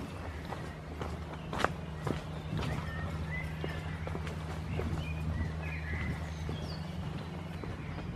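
Footsteps of a person walking along a dirt path, with irregular sharp clicks, the loudest about a second and a half in, over a steady low hum. A few faint high chirps come in the middle.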